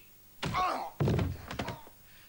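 A man's body hitting a wall and going down to the floor in a scuffle: a sharp knock, a short grunt, then a heavy thud about a second in with a few smaller knocks after it.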